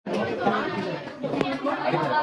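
Indistinct chatter of several young voices talking over one another in a classroom.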